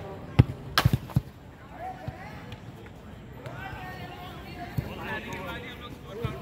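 A football kicked and bouncing on artificial turf: a few sharp thuds in the first second or so, the first the loudest. Players' voices carry on behind.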